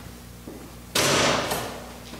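A door banging open or shut about a second in: a sudden clatter with a second hit half a second later, dying away quickly.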